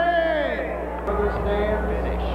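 Voices shouting in long, drawn-out calls, one falling in pitch in the first half second and then held steady tones, over a steady low hum.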